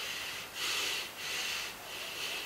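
A man breathing audibly through his nose: two drawn-out breaths, the first starting about half a second in and the second ending near the end.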